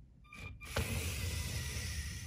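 LEGO SPIKE Prime robot's electric drive motors running as the robot sets off: a short whir about half a second in, then a steady motor whine from under a second in.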